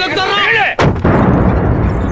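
Men shouting, cut off just under a second in by a sudden loud boom that carries on as a low rumble.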